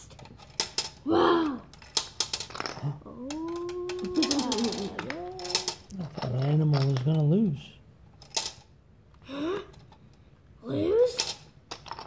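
Plastic Connect 4 checkers clicking and clattering into the upright grid. Between the clicks come wordless voice sounds: hums and sung tones, including one held note that bends in pitch a few seconds in.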